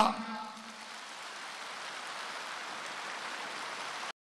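Steady applause from a large audience.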